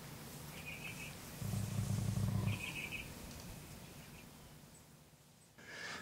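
Feral hogs fighting, faint and distant: a low growl lasting about a second, with two short high calls just before and just after it.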